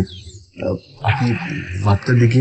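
A man speaking; the speech runs on with short breaks.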